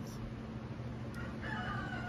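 A rooster crowing faintly: one long, level-pitched call that begins about one and a half seconds in.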